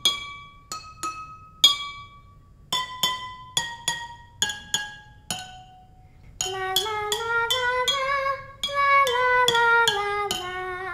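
Water xylophone: drinking glasses holding different amounts of water struck one at a time with a metal spoon, each ringing a clear note at its own pitch. There are about a dozen separate strikes in the first six seconds. From about six seconds in, a held tune that steps up and down joins the tapping.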